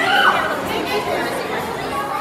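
Overlapping chatter of many voices, children's among them, in a busy indoor play hall, with one high-pitched voice rising and falling near the start.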